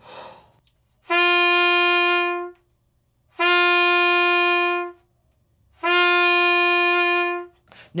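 Trumpet playing three long notes on the same pitch, each begun without the tongue, by air alone (a breath-started 'who' attack, the 'honking' articulation), after a short breath at the very start.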